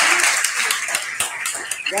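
A room audience applauding, the clapping thinning out and fading, with a voice starting to speak at the very end.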